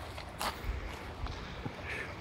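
Outdoor ambience: a low rumble of wind on the microphone, with a few scattered sharp clicks.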